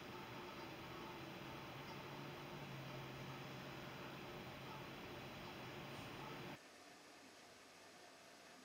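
Faint, steady hiss of room tone with a low hum, dropping suddenly to a quieter hiss about six and a half seconds in.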